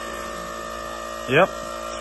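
A steady mechanical hum with several constant tones, from a machine running without change.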